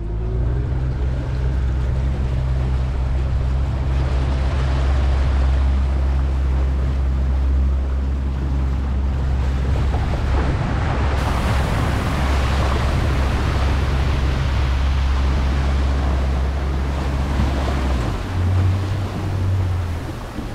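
Small motorboat under way: a steady low engine drone under the rush of wind and water past the hull. About 18 s in, the drone drops away and a different, lighter low note takes over.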